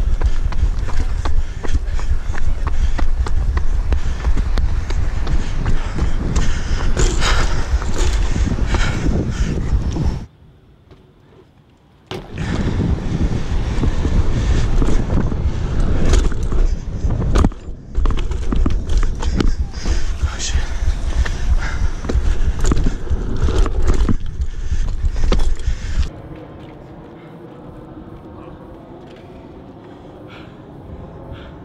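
BMX bike tyres rolling fast over rough concrete, a loud rumble full of small knocks with wind on the microphone. About ten seconds in, the rolling cuts out for about two seconds and comes back with a sharp landing impact, as when the bike clears a gap. More knocks follow, and near the end the riding noise stops, leaving a much quieter background.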